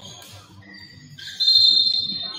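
Referee's whistle blown once, a steady shrill blast starting about one and a half seconds in, over faint gym hall noise.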